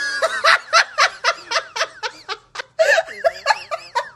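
A person laughing in quick, high-pitched bursts, about five a second, with a brief break a little past halfway.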